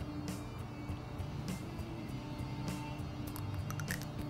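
Quiet background music with steady sustained tones, and a few faint small clicks, more of them near the end, as a small plastic spirit gum bottle cap is twisted open.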